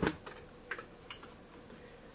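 Clothing being handled: faint fabric rustle with a few light, scattered clicks.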